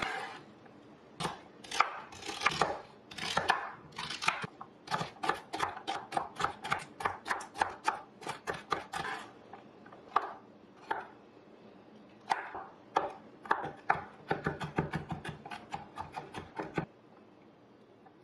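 Chef's knife chopping celery and then garlic cloves on a wooden cutting board. It makes quick runs of sharp knocks with short pauses between them, and stops about a second before the end.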